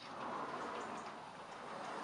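Bi-fold door panels being swung open and folded back along their track: a soft, even rushing noise that fades away over about a second and a half.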